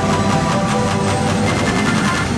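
Background music with held chords and a steady tick about four times a second, over a steady low rumble of a helicopter in flight heard from inside the cabin.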